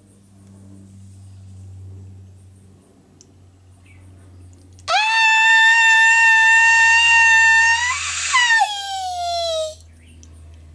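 A woman's long, high-pitched squeal of delight about five seconds in. It holds one steady pitch for about three seconds, then breaks and slides downward before cutting off just before the end. It is her excited reaction to drawing an unexpected bonus photo card.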